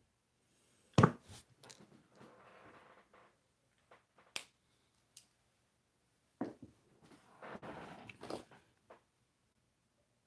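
Handling noises from a small wooden toy engine on a tabletop: a sharp knock about a second in, then faint rubbing and a few small clicks, with more rustling and clicking as it is picked up near the end.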